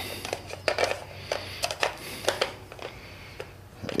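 Light, irregular clicks and taps of a plastic distributor cap being handled and seated onto the distributor of an air-cooled VW 1600 engine, over a faint steady hum.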